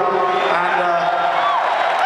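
A man's voice through the arena PA holding long wordless notes with slow rises and falls in pitch, over steady crowd noise.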